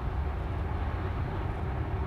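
Steady road and tyre noise with wind in the cabin of a Tesla electric car cruising at about 56 mph.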